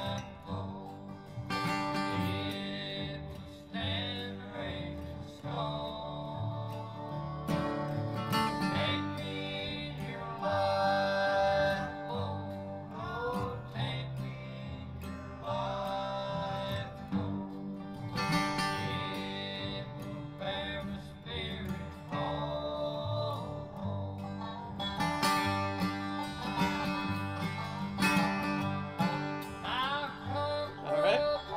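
A bluegrass song recording slowed to 55% speed: acoustic rhythm guitar strumming behind singing, with the strumming growing louder in the spaces between the vocal lines.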